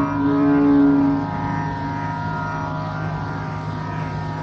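Carnatic music in raga Charukesi: a long held melodic note over a steady drone, the note dying away about a second in and leaving the drone sounding alone.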